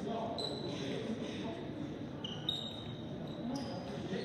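Basketball bouncing on a gym's hardwood floor, with a few short high sneaker squeaks, once about half a second in and twice about two and a half seconds in, and voices echoing in the large hall.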